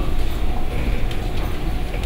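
Room noise: a steady low rumble with a faint hiss above it, and no speech.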